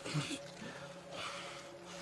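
A man's short breath or snort at the start, then soft breathing over a low, steady drone.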